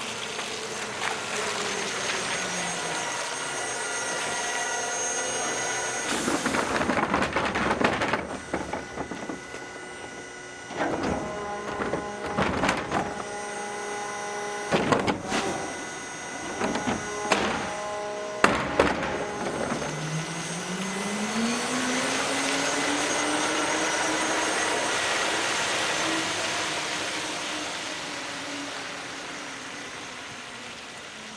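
Volvo FE Hybrid refuse truck emptying a bin and driving off: a clattering rush as the load tips, sharp knocks and thunks from the bin lift and compactor with a steady machine whine under them, then a motor whine that rises in pitch as the truck pulls away.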